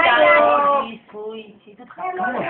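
A person's drawn-out, high-pitched wailing voice that breaks off about a second in, followed by fainter snatches of voices.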